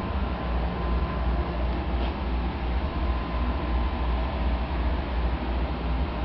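A blower fan running: a steady rushing hum with a low rumble underneath and a faint steady tone.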